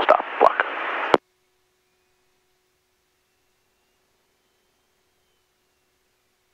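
The last second of an aircraft radio call, a thin, narrow voice cut off by a sharp click as the transmission ends. After it comes near silence with only a faint steady hum on the headset audio feed.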